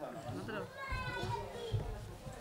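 Indistinct chatter of a gathered group in a hall, adults' and children's voices mixed, with no one voice leading.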